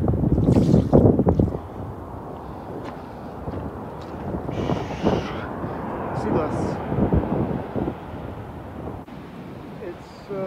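Wind buffeting the microphone, heaviest in the first second and a half, over a steady wash of surf on a pebble beach, with a few short rattles of stones along the way.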